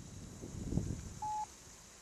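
A short electronic beep: one clear, steady pitch lasting about a quarter of a second, just past the middle. Before it comes a brief low rumbling buffet of noise on the microphone.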